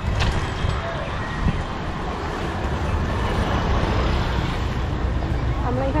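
Street traffic noise: a steady rumble and hiss of passing road vehicles, swelling a little in the second half.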